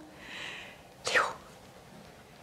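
A woman's whispered speech: a soft breath, then about a second in she whispers a short word, a name.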